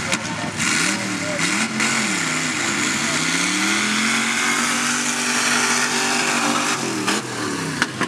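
Lifted 4x4 pickup truck's engine revving up and down, then held at high revs for several seconds under throttle on a dirt track, and dropping off about seven seconds in.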